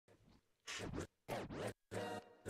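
Turntable scratching of a vinyl record: two quick scratch bursts, the pitch sweeping down and back up. A beat comes in at the very end.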